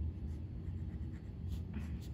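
Pen scratching on paper in short back-and-forth strokes while drawing a small zigzag (a resistor symbol), over a low steady background hum.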